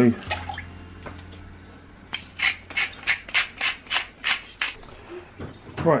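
Raw pork chops being put into a large aluminium stockpot of water: a quick run of about ten short, sharp handling and water sounds, starting about two seconds in. A low steady hum runs underneath in the first two seconds.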